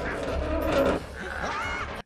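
Film soundtrack of a goblin battle scene: a dense jumble of clatter and noise, with a brief cry near the end.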